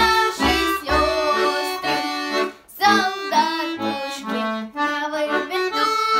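A button accordion plays a Russian folk song while a child sings the melody. The song has a marching rhythm of bass notes and chords, with a short break about two and a half seconds in.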